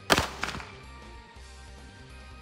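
Two gunshots from a Glock pistol fitted in a CAA MCK carbine conversion kit, fired about a third of a second apart near the start, the first the louder, over background music.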